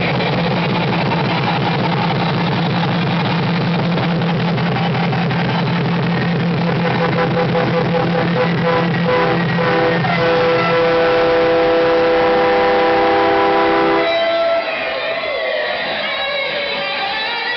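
Electric guitar played live with heavy distortion: a fast, low, pulsing rhythmic riff, giving way to long held notes that stop about fourteen seconds in.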